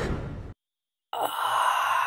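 The sound cuts out to dead silence for about half a second. Then a long breathy sigh begins and slowly fades.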